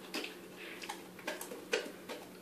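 A Newfoundland dog licking and smacking its mouth as it takes and chews spaghetti: a few faint, irregular wet clicks.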